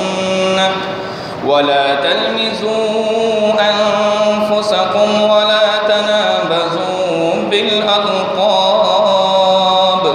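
A man chanting a melodic Qur'anic-style Arabic recitation into a microphone, holding long ornamented notes. He breaks briefly for breath about a second and a half in.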